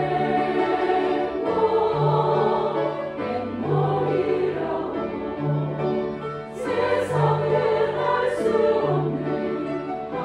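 A women's choir singing, accompanied by a grand piano, with held low notes about every second and a bit and crisp sibilant consonants from the singers.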